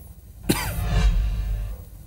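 A broadcast transition sound effect: a sudden whoosh about half a second in, sweeping down in pitch, over a deep low boom that fades away within about a second.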